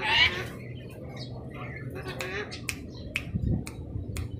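An Alexandrine parrot gives one short, harsh squawk at the start, followed by a run of sharp clicks over the next few seconds.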